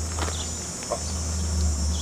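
Outdoor background in a pause: a steady low hum with a continuous high-pitched insect buzz over it, and a few faint clicks.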